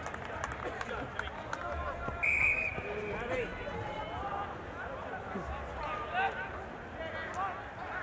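Open-air lacrosse field sound: scattered, distant shouts and voices of players and spectators, with a short trilled whistle blast a little over two seconds in.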